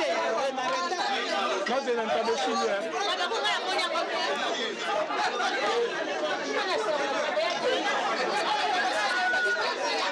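Crowd chatter: many people talking over one another at once, a steady hubbub of overlapping conversation with no single voice standing out.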